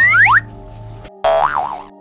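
Comic sound effects laid over background music: a quick burst of rising whistle-like glides, then about a second in a loud boing-like wobbling tone that bends up and down twice.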